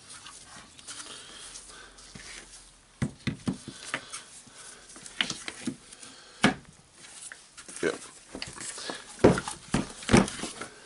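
Metal power-tool housings handled and fitted together on a wooden workbench: a run of irregular knocks and clunks, sparse at first and busier from about three seconds in, the loudest near the end.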